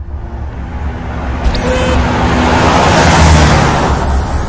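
A car driving past: a steady low rumble under a rush of road noise that swells to its loudest about three seconds in, then eases.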